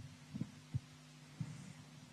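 Faint low steady hum on the broadcast sound, with four soft low thumps spread through the two seconds.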